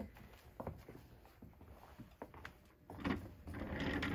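Handling noise as a person moves from the pressing station to the cutting table: scattered soft knocks and rustles, then a louder low rumble and knocks about three seconds in as she settles at the cutting mat.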